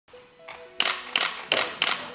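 Press photographers' camera shutters firing four times in quick succession, about three clicks a second.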